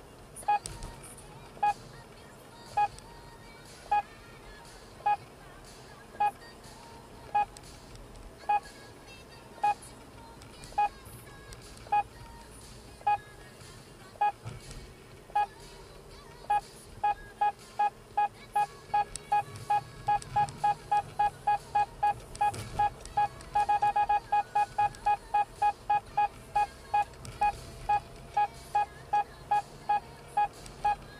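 Electronic beeping from an in-car speed-camera warning device, warning of a section speed-measurement zone with a 50 km/h limit. Short beeps come about once a second at first. About halfway through they quicken to two or three a second, run together into a brief continuous tone, then carry on fast, over faint road and engine noise.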